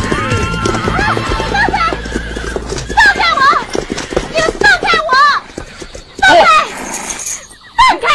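Horses galloping, their hoofbeats dense and fast, with repeated wavering whinnies and shouts from the riders.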